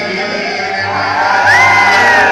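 Live Pashto tappay music on rabab with harmonium and tabla accompaniment. About a second in, a high voice rises over the music in a long held cry.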